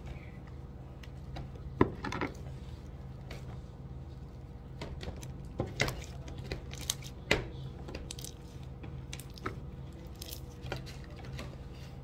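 Scattered small clicks, knocks and handling noises from hands working slime in foam cups, over a faint steady low hum.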